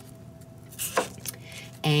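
Chef's knife slicing through a raw peeled potato onto a plastic cutting mat: a few short soft cuts a little under a second in, the firmest about a second in.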